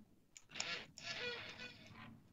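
A faint voice speaking in the background over a video-call line, too low to make out any words.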